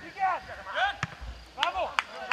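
Players shouting short calls on the pitch, with a few sharp thuds of a football being kicked, the clearest about a second in.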